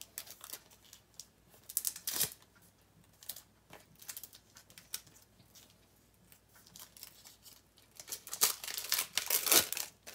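Scratch-off activation card being scratched at, with rustling of its plastic sleeve: quick rasping strokes in the first two seconds, then a louder, denser run near the end.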